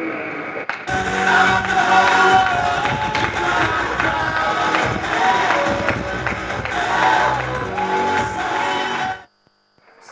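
Music starts about a second in and plays steadily, then cuts off suddenly near the end.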